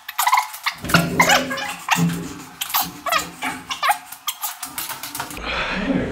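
A rapid run of animal-like growls and yelps, thin with the bass cut away, stopping about five seconds in.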